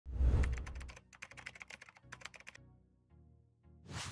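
Logo-intro sound effects: a deep boom, then a quick run of keyboard-like clicks, fading into a rising whoosh near the end.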